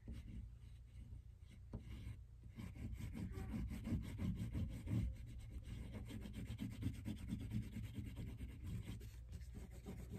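Oil pastel rubbing on construction paper in rapid short strokes, drawing lines for texture. The sound is quiet and gets busier a few seconds in.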